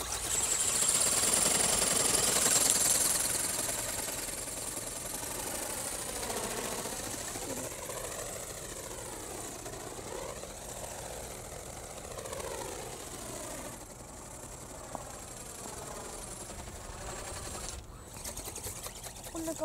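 Radio-controlled flapping-wing ornithopter's small geared brushless electric motor buzzing with a high whine as the wings beat, loudest in the first few seconds. It then grows fainter, its pitch rising and falling as the model flies around overhead.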